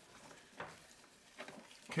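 Faint handling clicks of a compression tester hose fitting being screwed into a spark plug hole of the Beetle's air-cooled flat-four engine, two small clicks about half a second and a second and a half in.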